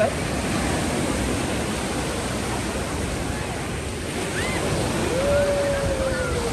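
Small ocean waves breaking and washing up a sandy beach, a steady rush of surf, with some wind on the microphone. Near the end a voice calls out in one long drawn-out note.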